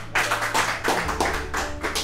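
A short round of hand clapping from a few people, several claps a second, over soft background music with held notes.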